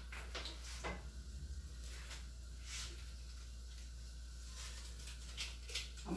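Faint kitchen handling sounds: a few scattered light knocks and clinks as pots and utensils are moved about at the sink and stove, over a steady low hum.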